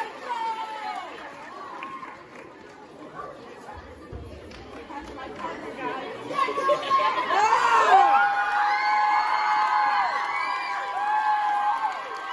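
Audience chatter, then about six seconds in the crowd breaks into loud cheering and long, high-pitched screams that carry on to the end.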